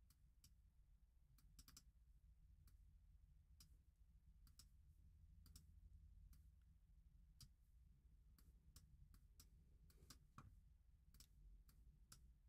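Near silence: room tone with faint, irregular clicks of a computer mouse, some twenty over the stretch.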